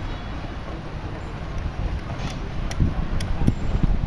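Outdoor street ambience with an uneven low rumble of wind on the microphone and a few faint knocks in the second half.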